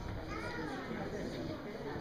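Chatter of young children's voices, with one high child's voice rising and falling about half a second in.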